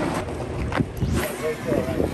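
Outdoor ambience: wind on the microphone with faint voices of people talking in the background.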